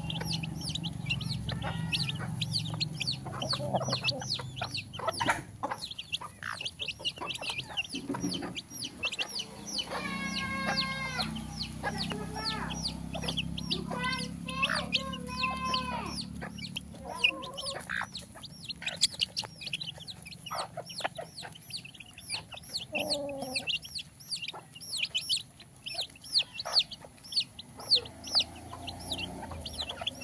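A flock of chicks peeping rapidly and continuously as they feed, their beaks tapping on the concrete floor. An adult hen gives several longer calls near the middle.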